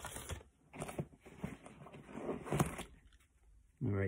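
Rustling and scuffing of gear being handled in a nylon backpack pouch, with several short crinkles and knocks as items are put away and a notepad is pulled out.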